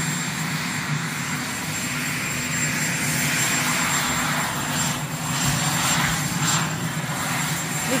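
Helicopter turbine engines running at idle on the ground: a steady low hum with a hiss above it. A few brief rushes of noise come between about five and seven seconds in.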